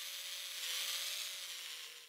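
Small electric motor of a remote-control toy truck whirring, growing a little louder in the middle and fading away near the end.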